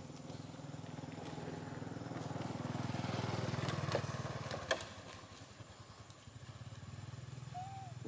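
Motorcycle engine passing close by, growing louder for the first half and then fading away, with a couple of sharp clicks as it goes past.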